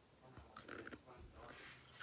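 Faint chewing of crunchy rolled tortilla chips (Takis) with the mouth close to the microphone, a little louder near the end.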